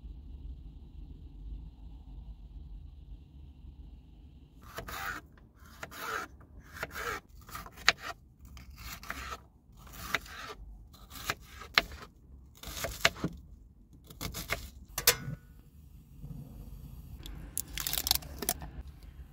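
Kitchen knife chopping a red pepper on a cutting board: irregular short cuts and taps on the board, starting about five seconds in after a quiet low hum.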